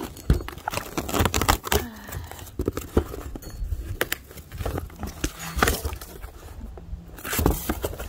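A cardboard shipping box being opened by hand: packing tape pulled and torn from the seam and the cardboard flaps handled, giving irregular scrapes, clicks and knocks.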